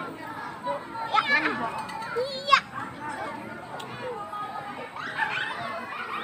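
Children's voices chattering and calling out, with a brief high squeal about two and a half seconds in.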